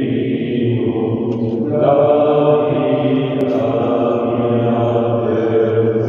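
Slow devotional hymn singing in a chant-like style, with long, held notes and a new phrase starting about two seconds in.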